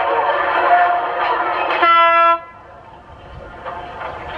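Voices talking, then, a little under two seconds in, one short horn toot, a single steady note of about half a second that cuts off abruptly.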